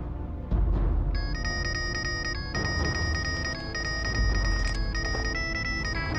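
A mobile phone ringtone, a high electronic melody of repeated beeping notes, starts about a second in and keeps ringing as an incoming call. Under it runs a dramatic music score with a deep low boom.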